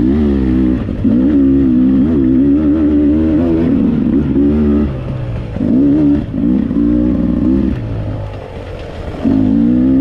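Dirt bike engine revving as it is ridden, the throttle opened and closed in bursts: a long pull for about the first five seconds, another about six seconds in, and a short one near the end, easing off in between.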